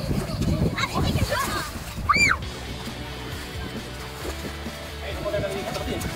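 Children's voices and a single loud, high squeal of a child about two seconds in, over sloshing shallow water; after that, background music with steady held notes takes over.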